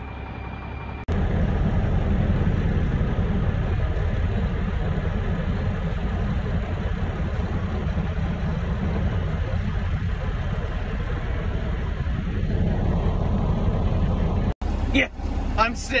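Semi truck's diesel engine running, heard from inside the cab as a steady low rumble, with a rising whine a little before the end.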